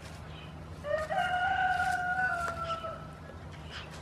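A single long animal call about a second in: one held note with a short rising start, lasting about two seconds and dipping slightly in pitch before it stops.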